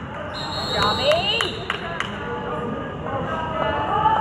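A referee's whistle blown once for about a second, over spectators' voices in a gymnasium, with a few sharp knocks during the whistle.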